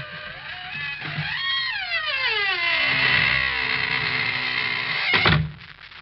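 Radio-drama sound effect of a squeaking door slowly closing: a long, drawn-out creak that glides down in pitch and then holds as a high squeal, ending with the door shutting with a thud about five seconds in. A man's short laugh comes just before the creak.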